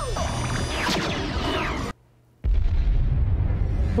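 Battle explosions in an animated film's soundtrack, played back through speakers: a dense rumble with high gliding tones over it cuts out suddenly about two seconds in, then a heavy low booming rumble starts again.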